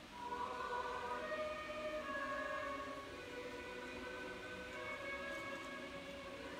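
Orthodox church choir singing slow, long-held notes of a liturgical chant, several voices together.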